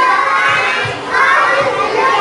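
A group of young children singing a rhyme together in unison.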